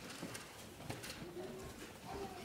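Pages of a Bible being turned at a lectern: a few soft paper flicks and rustles, with a faint brief low hum near the middle.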